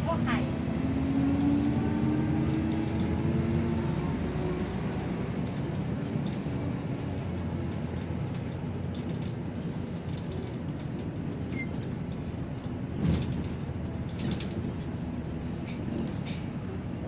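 Interior running noise of a city bus in traffic: a steady low engine and road rumble, with the engine note rising over the first few seconds as the bus speeds up. A single sharp knock about 13 seconds in.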